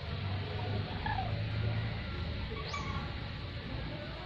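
Caged lories giving short squeaky calls, with one quick rising squeal about three-quarters of the way through, over a steady low hum.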